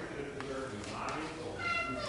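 A small child's high-pitched voice letting out short whiny cries, the loudest one near the end.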